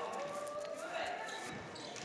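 Faint basketball dribbling on a gym's hardwood floor, with a few bounces, under indistinct voices from the crowd and the court.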